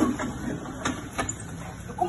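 Scuffling of two people wrestling on a hard floor, with a few sharp knocks, the loudest right at the start.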